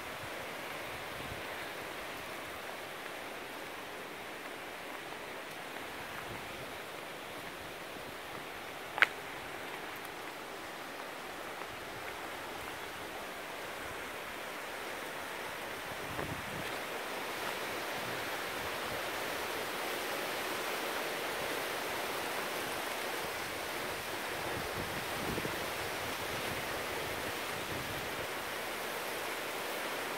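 Steady outdoor wash of noise with no distinct source, growing slightly louder after the middle, with one sharp click about nine seconds in.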